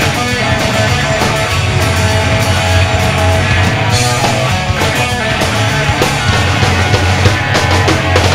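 Live rock band playing an instrumental passage with no vocals: electric guitar, bass guitar and drums, loud and steady.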